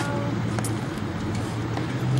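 Steady low hum of motor vehicle traffic, with a few faint ticks over it.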